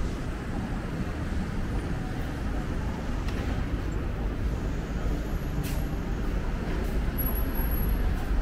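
Steady low rumble of city street noise from road traffic, with a few faint clicks.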